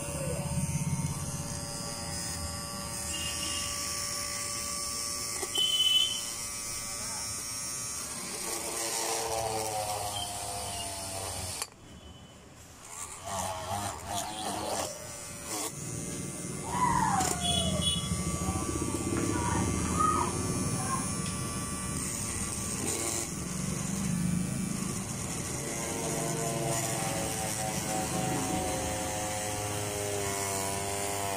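Homemade mini drill, a small DC motor with a chuck and bit, running with a steady whine while drilling a printed circuit board; the sound drops out briefly near the middle.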